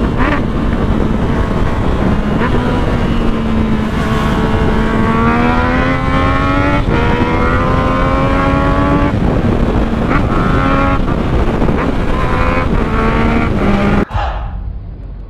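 Yamaha MT-09 three-cylinder engine running hard at highway speed, heard from the rider's seat. The engine note climbs for a few seconds, breaks off briefly about halfway through, then holds steady again.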